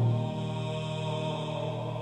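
Skinner pipe organ holding a soft sustained chord, after a sung baritone note stops right at the start.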